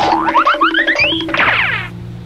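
Short comic musical sound effect: a quick run of notes stepping upward in pitch over a low held note, ending in a springy, boing-like flourish that cuts off suddenly.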